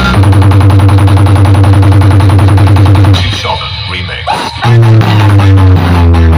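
Loud bass-heavy DJ dance music played through a towering stack of loudspeaker boxes, with a deep bass line under a rapid pulsing beat. About three seconds in the beat drops out for about a second and a half, with rising sweeps, before the bass comes back in.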